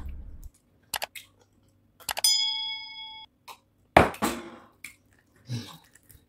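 Eating by hand: soft chewing and food-handling clicks, with a knock about four seconds in. About two seconds in, a single clear bell-like ding rings for about a second and stops sharply.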